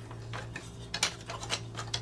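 Small hard-plastic clicks and taps, a few scattered through, as the panels of a large transforming robot toy are pushed and fitted into place by hand, over a low steady hum.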